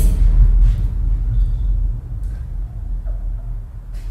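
A loud, deep low rumble that starts suddenly and runs on, easing somewhat in the second half, with no clear speech over it.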